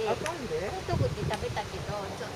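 People's voices calling out, in short rising and falling phrases, with two sharp clicks about a quarter second and a second and a third in.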